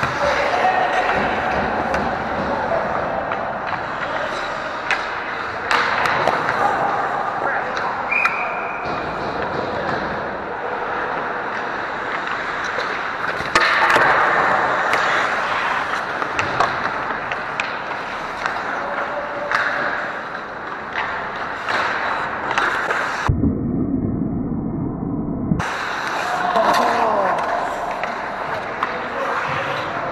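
Ice hockey play right in front of the goal: skate blades carving and scraping the ice, with frequent sharp clacks of sticks and puck. For a couple of seconds near the end the sound turns muffled and dull.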